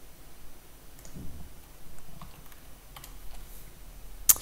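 A few faint, scattered computer keyboard clicks over quiet room hiss, with a couple of soft low thumps between them.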